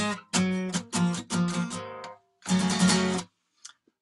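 Acoustic guitar strummed in short runs of chords with brief gaps between them, stopping a little after three seconds in.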